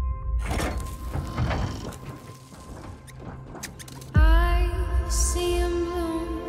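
Film-trailer music with scattered soft knocks and rustles, then a deep boom hit about four seconds in that opens into a held, swelling chord.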